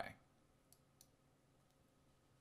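Near silence with two faint, short clicks under a second apart, about two-thirds of a second and one second in, typical of a computer mouse button being clicked.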